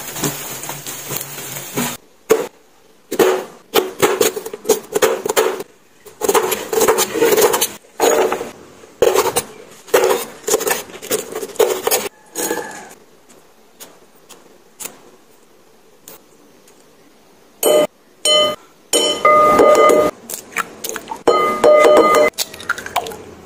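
Oil sizzling on a tawa for about two seconds. Then a knife chops on a steel cutting board, two or three ringing strokes a second, for about ten seconds. Near the end come loud clinks with a ringing glassy tone, eggs being knocked and cracked against a glass mixing bowl.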